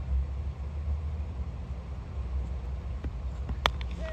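A cricket bat striking the ball once, a single sharp crack about three and a half seconds in, as a low full toss is played away. A steady low rumble runs underneath.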